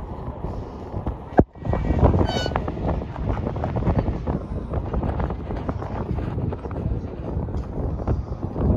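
Wind buffeting the microphone on an open-air skyscraper observation deck, a steady low rumble with faint voices in the background. A sharp click about a second and a half in is followed by a brief dropout.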